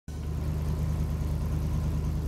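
Airboat's engine and propeller running steadily: a constant low hum with no change in speed.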